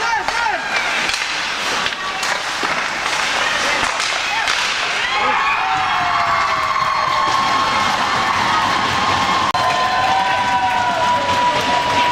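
Hockey spectators shouting and cheering at an ice rink, many voices rising and falling, one of them held long over the second half. A few sharp stick or puck clacks come near the start.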